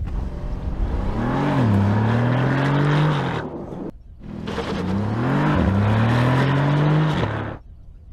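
Two separate runs of a Porsche Panamera E-Hybrid accelerating hard from a standstill. Each time the engine note rises, drops once at an upshift and climbs again, and each run cuts off abruptly after about three seconds.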